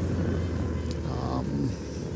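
2008 BMW R1200R's boxer twin engine running steadily at cruising speed, with tyre noise from hard-packed gravel.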